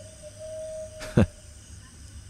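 Background ambience in a produced audio piece: a faint steady tone holds one pitch, and one short, sharp, loud sound comes about a second in.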